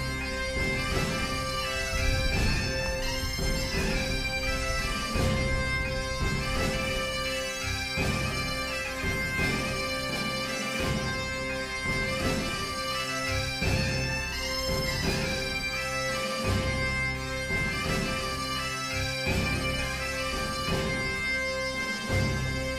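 Background music: a reed-pipe melody played over a steady, unchanging drone, like bagpipes.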